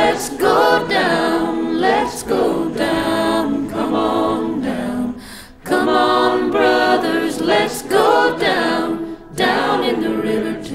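Background music: an a cappella choir singing slow, held notes, with a brief pause about halfway through.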